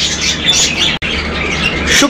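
Birds chirping and squawking in short, high calls over a low steady hum, with a brief break in the sound halfway through.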